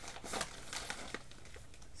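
Faint crinkling of a bag of ground coffee being handled and turned over in the hands, a scatter of short crackles.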